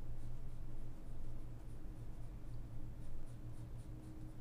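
Pencil shading on paper: quick, short scratchy strokes, a few each second.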